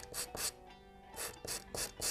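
A calligraphy pen's nib being rubbed back and forth on sandpaper to shape and smooth it. It makes short scratching strokes in quick runs: two near the start, a pause, then three more in the second half.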